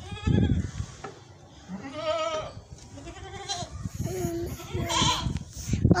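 Makhi Cheeni goats bleating, about five separate quavering calls spread over a few seconds.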